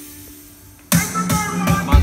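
Music played through an 18-inch Ashley L900A speaker driver in its cabinet during a test: a fading tail, then a new passage starts suddenly about a second in, with heavy bass coming in near the end.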